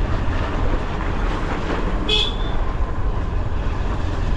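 Motorcycle on the move, a steady low rumble of engine and wind on the microphone, with a single short horn beep about two seconds in.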